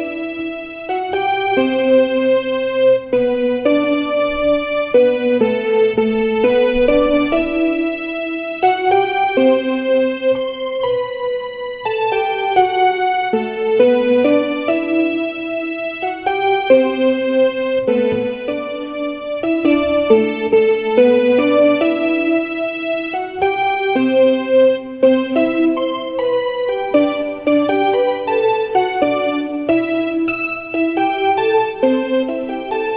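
Yamaha portable keyboard playing a slow melodic line, notes stepping up and down one after another, played very slowly as a demonstration.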